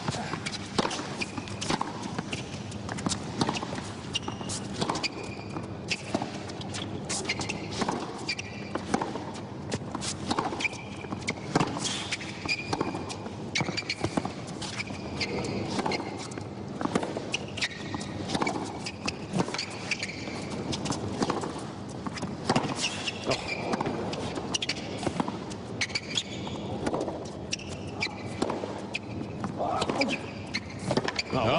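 A long tennis rally on a hard court: repeated sharp racket strikes on the ball going back and forth, with shoes squeaking on the court surface between shots.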